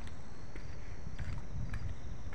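Low, steady wind rumble on the microphone of a handheld camera being carried on a walk, with faint clicks of footsteps and a few short, high chirps.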